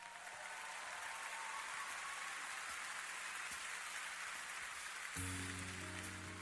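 Audience applauding and cheering. About five seconds in, the band's instrumental intro begins with held chords and a bass note.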